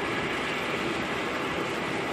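Steady, even rushing noise inside a Scania truck cab in heavy rain: rain on the cab mixed with the truck's running noise.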